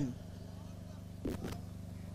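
A pause in speech: a faint, steady low hum, with one brief faint sound a little past the middle.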